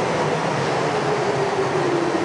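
Stainless-steel electric commuter train slowing as it pulls into an underground station platform: steady rolling noise with a tone that falls slowly as the train slows.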